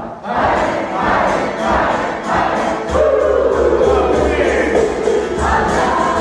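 A group of men and women singing a devotional dance chant together, with a long held note in the middle.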